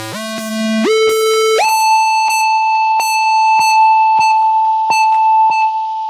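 Electronic dance music on a club sound system: a buzzy synthesizer note that jumps up an octave just under a second in and again about a second and a half in, then holds high, with sharp clicking hits over it.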